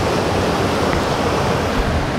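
Rushing water of the Annagh River's rapids and small waterfall, a loud steady rush; the river is running high.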